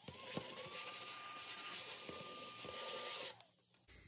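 Small battery-powered tabletop vacuum running over a scratched-off card to pick up the shavings: its motor whine rises as it spins up, holds steady, and cuts off about three seconds in.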